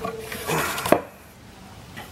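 Handling noise from the pegboard-and-wood foam cutter frame being moved: a short scrape ending in a sharp knock just under a second in.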